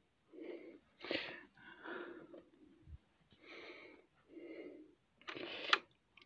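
A person breathing audibly close to the microphone: about six breaths in and out, each under a second.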